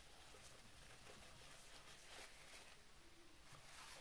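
Near silence, with faint rustling of a paper tissue being rubbed over the alarm clock's face and casing.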